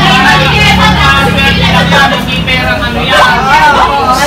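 Several voices talking over one another in a lively group, with a steady low hum underneath for the first couple of seconds.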